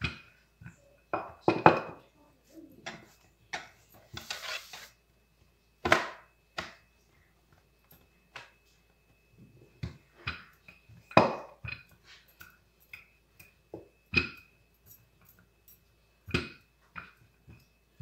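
Wooden rolling pin rolling out dough on a countertop: irregular knocks and short thuds as the pin is pushed, lifted and set down, with a brief scrape about four seconds in.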